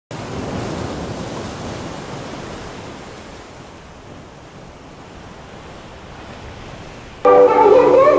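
Ocean surf washing in a steady rush that fades down over the first few seconds. Music comes in suddenly near the end and is louder.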